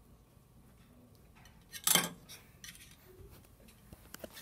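A small plastic stemmed drinking cup set down on a table: one brief clack about two seconds in, over quiet room tone, with a few faint small handling noises after it.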